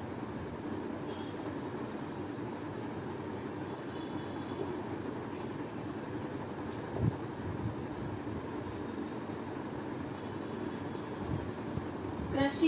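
Steady background rumble, with a dry-erase marker writing faintly on a whiteboard and a single low thump about seven seconds in.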